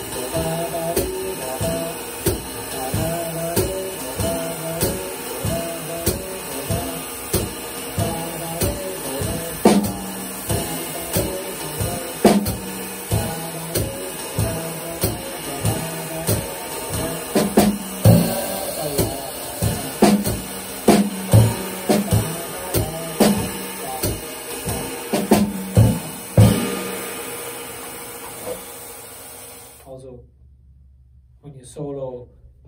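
Jazz drum kit played in time, with the drummer singing a wordless melody over it through roughly the first half. The playing stops about 26 seconds in and the kit rings out and fades.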